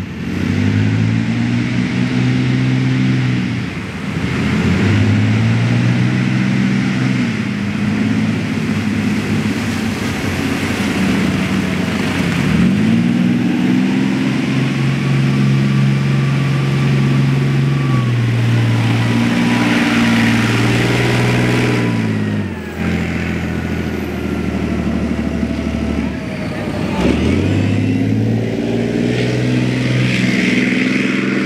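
Leopard 2A6A3 main battle tank's MTU MB 873 V12 twin-turbo diesel engine revving up and down repeatedly as the tank drives through deep mud. Above it, a thin whine slowly drops in pitch through the middle of the stretch.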